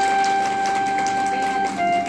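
A steady held tone with a few overtones that steps down to a slightly lower held pitch near the end, over scattered faint clicks.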